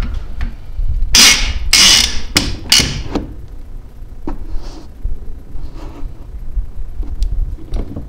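Bike-rack bar and its end pad scraping and knocking against a pickup truck's bed rail as they are shifted and adjusted to fit the bed. A quick series of loud rasping scrapes and knocks comes in the first three seconds, then lighter taps and a few sharp clicks.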